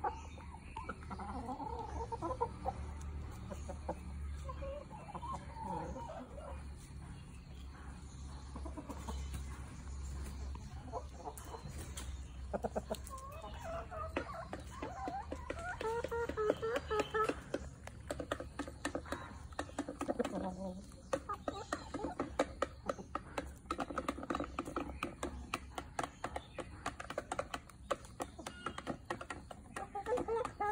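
A backyard flock of chickens clucking on and off as they feed, with many small clicks throughout.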